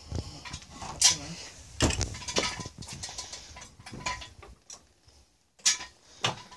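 Irregular metal clicks and clanks from a makeshift car-jack and axle-stand rig being raised a notch, with sharp knocks about one and two seconds in.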